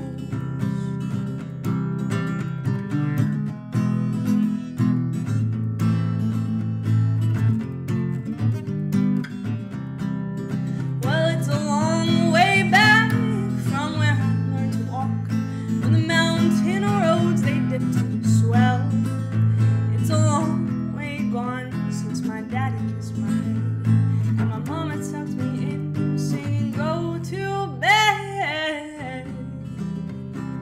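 Acoustic guitar strummed in a steady chord pattern, with a wordless vocal melody joining over it from about a third of the way in.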